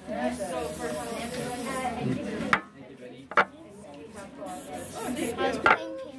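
Indistinct voices of people talking, broken by three sharp clicks or knocks, the first about two and a half seconds in and the last near the end.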